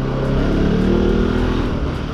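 Bajaj Pulsar RS 200's single-cylinder 200 cc engine running at a steady, light throttle while the bike rolls along at low speed.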